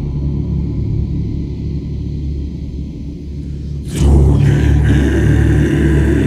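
Live choral music from a choir of growled voices: a low, steady rumbling drone, joined about four seconds in by a sudden, louder swell of massed voices.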